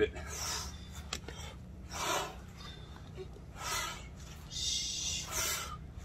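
Short, breathy exhalations roughly every second and a half, from people breathing out with each twist as they work through a trunk-twist exercise holding pumpkins, over a low steady background hum.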